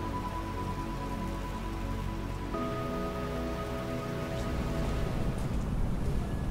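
Background music of long held notes, the notes changing about two and a half seconds in, over a steady hiss like rain.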